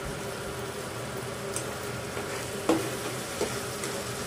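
Pork pieces sizzling steadily in pork fat in a frying pan, with one sharp knock of the spatula against the pan about two and a half seconds in.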